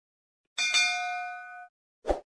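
A single bright 'ding' with several ringing tones, the notification-bell chime of a subscribe-button animation. It starts about half a second in, fades, and cuts off about a second later.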